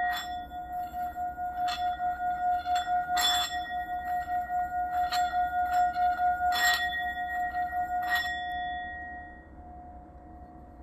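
Small brass singing bowl, held on its cushion in the palm and sung by working a wooden mallet around its rim. It gives one steady ringing tone with higher overtones that wavers in loudness several times a second, with a few light scrapes of the mallet on the metal. The tone dies away near the end.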